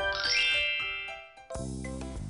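A short TV weather-segment intro jingle ends on a bright, sparkling chime that rings and fades away. About a second and a half in, a steady low background music bed starts.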